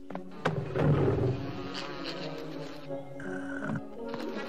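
A deep roaring grunt from a large cartoon dinosaur, loudest about a second in, over orchestral film score. A short insect buzz follows near the end.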